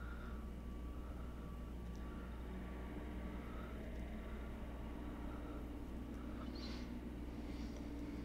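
Quiet room tone: a steady low hum, with a couple of faint, soft breaths near the end.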